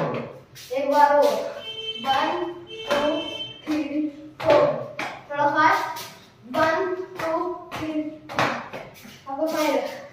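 A voice singing a melody in short phrases of about half a second to a second, with a few sharp claps among them.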